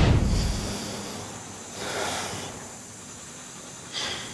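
A loud rushing whoosh of noise that fades over about a second and a half, then a second, softer hissing rush about two seconds in.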